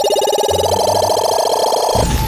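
An added sound effect: a rapid warbling electronic tone, like a telephone bell, played as a play washing machine's drum spins. It steps up in pitch about two-thirds of a second in, then cuts off.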